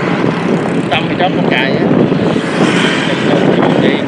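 Steady rushing wind and road noise from riding along a road, with a few brief voice fragments about a second in.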